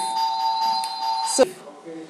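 A steady electronic ringing tone, several pitches held together, that cuts off suddenly about one and a half seconds in.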